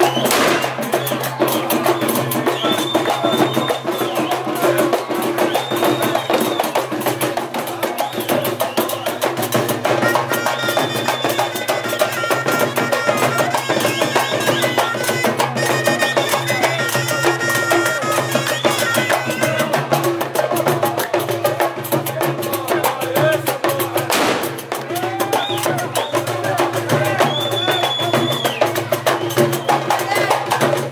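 Traditional Algerian wedding music: hand drums beating a busy, dense rhythm under a high, held wind-instrument melody, with voices of the crowd mixed in.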